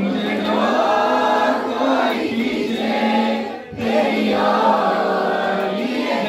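A man singing into a handheld microphone, amplified, in long held notes with a short break for breath a little past halfway.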